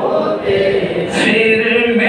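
A man singing an Urdu naat unaccompanied into a microphone, holding long notes, with a short hiss about a second in.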